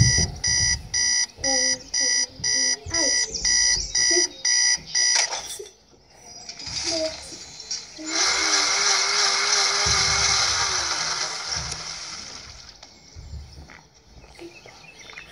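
Electronic alarm beeping, about two high beeps a second, that stops about five seconds in. A steady hiss with a wavering low hum follows from about eight seconds in and fades out near the end.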